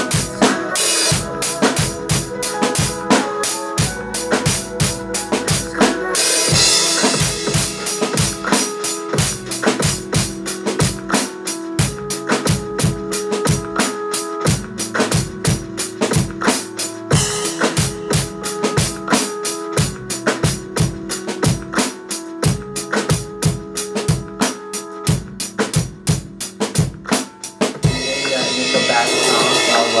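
Acoustic drum kit played along to the song's backing track: a steady beat of bass drum and snare, with cymbals washing over the middle stretch. Near the end the drumming stops on a cymbal left ringing out.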